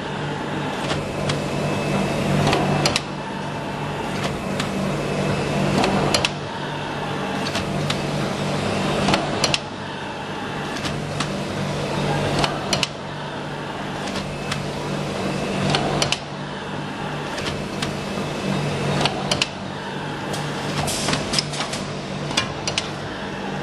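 Automatic cotton swab making machine running: a steady low hum under rapid, irregular clicking and clattering of its mechanism, the sound dropping and building again in a repeating cycle about every three seconds.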